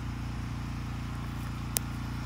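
Small engine running steadily at idle, a low even hum, with one sharp click near the end.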